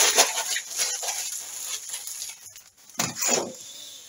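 Crumpled aluminium foil crinkling as it is handled, fading out within the first second. About three seconds in comes a short sound from a man's voice.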